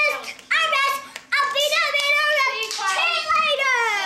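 A young girl's high voice singing loudly in long held notes without clear words, the last note sliding down in pitch near the end.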